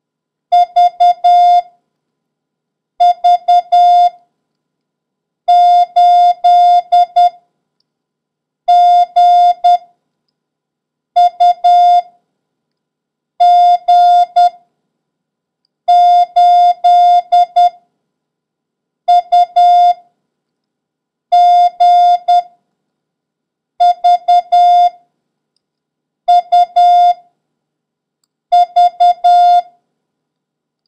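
Morse code practice tone: a single steady mid-pitched beep keyed in dots and dashes, one character about every two and a half seconds with silent gaps between, sending the letters V, U, G and the number 8 as a copying drill.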